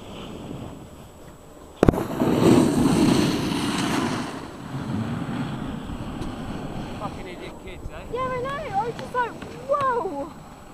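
A sharp knock about two seconds in, then a couple of seconds of loud rushing scrape as a snowboard slides across the snow. Near the end a man's voice calls out.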